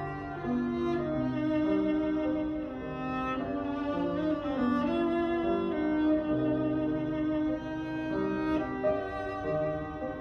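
Cello played with the bow: a melody of held notes, each lasting around half a second to a second before moving to the next pitch.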